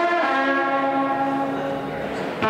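Live blues band with trombone and electric guitars holding one long note that slowly fades.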